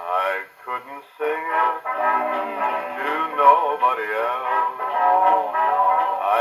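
A 1946 Decca 78 rpm record playing on an acoustic Victrola phonograph: male voices singing with a dance-band orchestra. The sound is thin and boxy, with no bass and little top.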